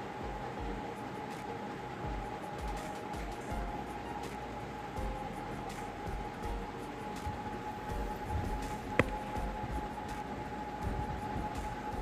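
Chopped onions frying in ghee in a steel pressure cooker: a steady sizzle with a faint steady hum under it, and a steel ladle stirring and knocking against the pot. A sharp click of metal comes about nine seconds in.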